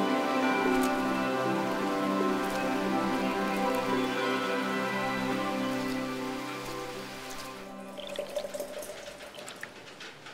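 Film score of sustained chords over heavy rain; the music fades out about three-quarters of the way in, leaving the rain and dripping.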